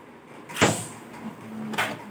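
A Beyblade Burst spinning top launched into a plastic stadium: a sharp ripping whoosh and clack about half a second in as it hits the floor, then a steady whir as it spins, with another clatter near the end.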